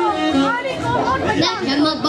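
Amplified stage music with people's voices talking over it.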